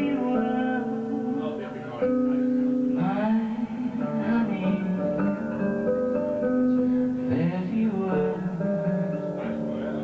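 A folk ballad performed live by voice and acoustic guitar, with long held notes and a few rising slides in pitch.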